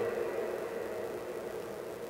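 Steady room tone in a pause between spoken phrases: a faint even hiss with a low hum and no distinct events.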